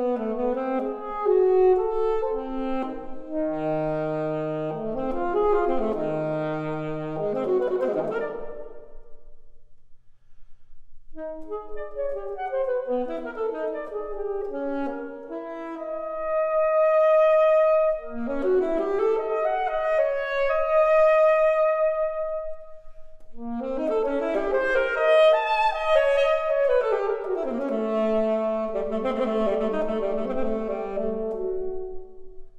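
Alto saxophone and grand piano playing a classical duet, with a short break in the phrase about ten seconds in and a long held saxophone note in the middle.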